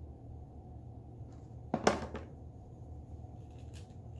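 Handling of a plastic selfie stick: one sharp click a little under two seconds in, with a few faint ticks around it, over a steady low hum.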